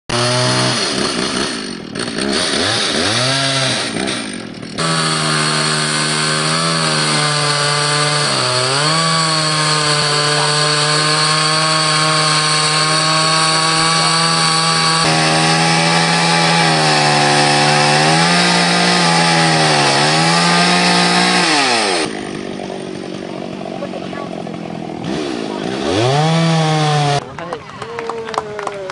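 Two-stroke chainsaw cutting into a log, held at high revs for long stretches with a few short dips in speed. Near the end it drops to a quieter idle for a few seconds, revs once more, then winds down.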